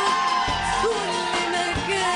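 Live band playing an Arabic pop song, with a woman singing long, wavering held notes over steady drum hits.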